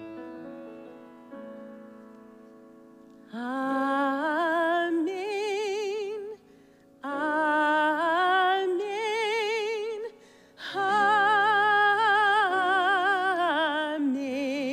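Piano chords, then a solo woman's voice singing three long phrases with wide vibrato over the piano, with short gaps between them.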